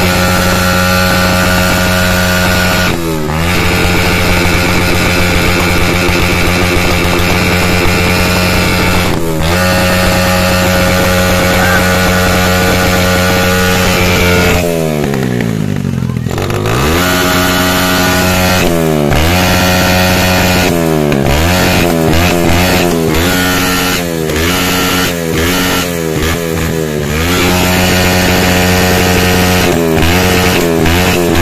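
Small motorcycle engine revved hard and held at high revs, its pitch dipping and snapping back up again and again as the throttle is let off and reopened, with one deeper drop about halfway through. It is revved so hard that the exhaust glows and throws sparks, with the bike close to catching fire.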